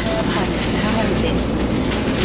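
Steady low hum inside a Sapsan high-speed train carriage, with a woman's voice talking over it.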